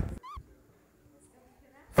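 A single short, high-pitched chirp with a rise-and-fall in pitch, then near silence.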